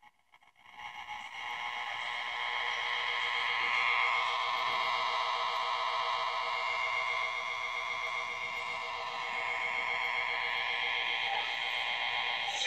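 Zenith Trans-Oceanic H500 tube radio's speaker giving a steady, wavering hiss and whine with a faint steady tone underneath, as the set is tuned across the dial. The sound comes up within the first second and carries no clear speech or music.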